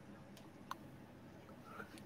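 Near silence: room tone, with two faint clicks in the first second, the second one sharper.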